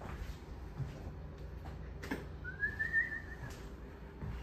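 A single whistled note about a second long, rising in pitch and then easing slightly down, about halfway through, just after a sharp click.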